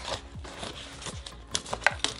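Cardboard retail box being handled and opened, with light crinkling and a few sharp clicks in the second half as the flap comes free.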